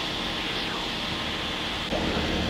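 Steady cabin noise of a Tecnam P92 Super Echo light-sport aircraft in cruise: an even rush of airflow hiss over a low engine drone.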